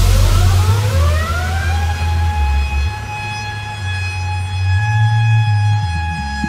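Electro house remix: a siren-like synth tone glides upward over about two seconds and then holds steady, over a low bass line that changes note every second or so.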